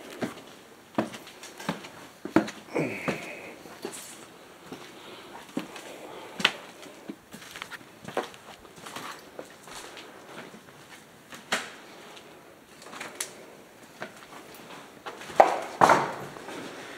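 Footsteps on concrete stairs and a debris-strewn floor: an irregular run of knocks and scuffs, with a louder clatter near the end.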